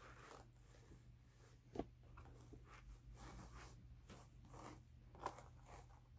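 Jacob wool being pulled and stroked across the wire teeth of a flat hand carder: faint, scratchy rasping strokes, with a sharper tick a little under two seconds in and another about five seconds in.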